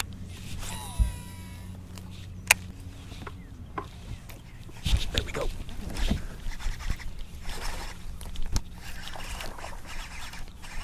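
A baitcasting rod and reel being cast, the spool giving a brief rising-and-falling whine as line pays out, then sharp clicks and a stretch of reeling and rod-handling noise as a fish is hooked and worked in. A steady low hum runs underneath.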